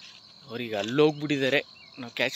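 Steady high-pitched insect chirring, like crickets, as a constant background drone. A man's voice speaks over it briefly from about half a second in, louder than the insects.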